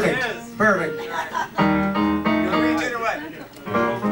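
Jazz band warming up between tunes: a few sustained piano chords and short loose instrument notes, with voices chattering in the room.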